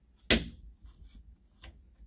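A sharp click about a third of a second in, then a few faint clicks: fingers handling a sliding closet door's top roller bracket and its white plastic height-adjustment disc.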